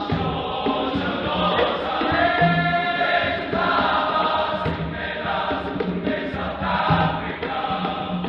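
Large men's choir singing in harmony.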